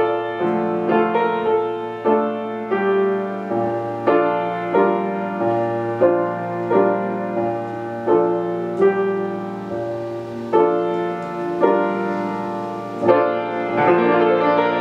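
Solo grand piano playing a gentle waltz: sustained chords struck about every 0.7 seconds over a slowly moving bass line, the notes ringing into each other.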